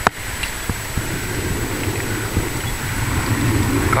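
Wind buffeting the microphone over water rushing along the hull of a sailing yacht under way: a steady, rumbling wash of noise.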